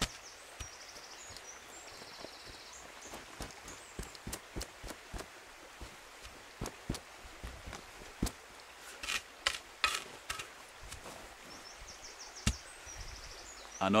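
Spade pushing loose soil and turf back into a small dug hole, then boots treading it down: a run of soft scrapes and thuds, with a denser cluster of sharper scrapes about nine to ten seconds in.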